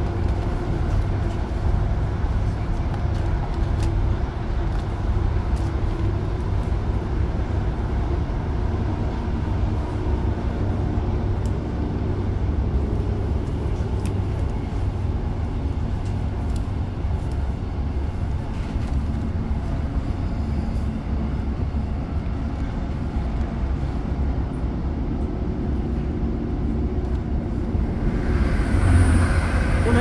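Interior sound of a Class 156 Super Sprinter diesel multiple unit under way: the steady low rumble of its underfloor diesel engine and wheels running on the rails. Near the end it swells into a louder rush as another train passes alongside.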